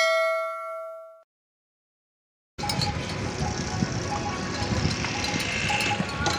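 A bell-like notification ding sound effect rings and fades away within about a second. After a short silence, a steady, rough outdoor noise begins about two and a half seconds in: the field sound of a herd of camels moving over dusty, stony ground.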